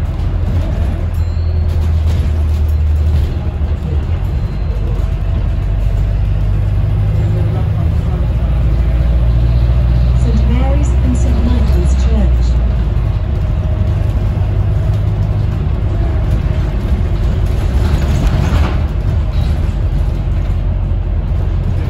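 Cabin sound of a Volvo B5LH hybrid double-decker bus on the move: a steady low drone and rumble from the drivetrain and road, its pitch shifting a couple of times as the bus changes speed, with a short hiss near the end.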